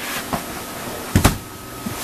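Hard plastic storage tote and its lid being lifted and shifted, with a sharp double knock of plastic on plastic a little over a second in.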